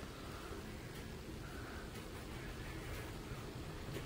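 Faint rustling of tulle netting handled in the fingers while thread is knotted around it, over a steady low room hum.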